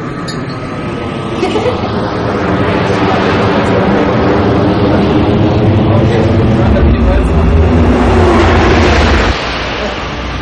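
Spaceship engine sound swelling up as it starts, growing louder over the first few seconds into a steady drone. A deep rumble joins it for the last couple of seconds before it cuts off suddenly about nine seconds in.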